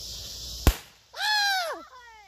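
A twist-to-fire confetti cannon goes off with one sharp pop, followed about half a second later by a long, high excited shout that rises and falls in pitch.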